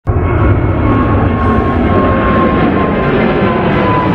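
Jet airliner sound effect in an intro animation: a steady jet engine rumble with a thin high whine, starting abruptly.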